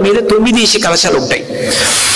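A man speaking Telugu into a microphone in a spiritual discourse, his voice rising and falling. Near the end comes a drawn-out hissing sibilant.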